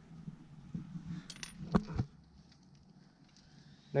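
A few light metallic clinks and knocks in the first half, from handling a steel brake caliper bolt and tools.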